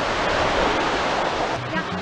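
A steady rushing noise, with a voice briefly coming in near the end.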